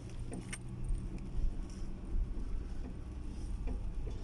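Car driving, heard from inside the cabin: a steady low engine and road rumble, with a few light clinks near the start and again near the end.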